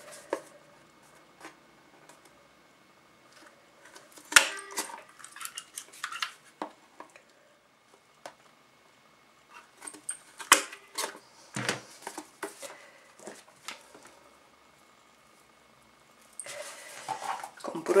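Crop-A-Dile hand hole punch snapping through covered cardboard: two sharp snaps about six seconds apart, with light paper handling and small clicks between.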